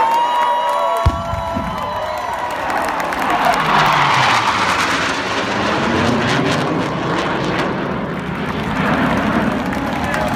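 Three military jets flying low over a stadium in formation: their rumble comes in suddenly about a second in, swells to its loudest around the middle and carries on, mixed with a crowd cheering. A choir's final sung note fades out at the very start.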